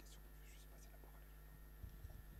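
Near silence: room tone with a steady low hum and faint whispering in the hall, with a soft low bump near the end.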